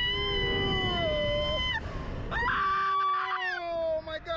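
Two riders screaming on a slingshot ride, in two long, high held screams: the first breaks off just under two seconds in, and the second starts about half a second later. A lower voice screams under the high one, and wind rumbles on the microphone.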